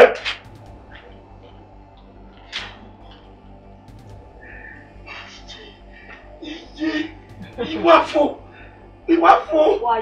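A faint steady background hum with a few small clicks, then a person's voice in short bursts of speech from about six seconds in.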